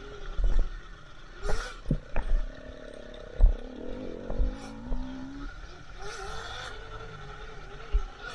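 Electric Sur-Ron dirt bike ridden over a rough forest trail: a faint motor whine that rises in pitch around the middle as the bike speeds up, with sharp knocks and rattles from the bike over bumps and gusts of wind on the microphone.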